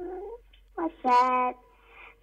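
A young girl singing over a telephone line, with a gliding note at the start and a long steady held note about a second in.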